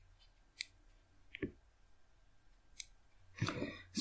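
A few faint, sharp clicks spaced about a second apart, then a man's voice begins near the end.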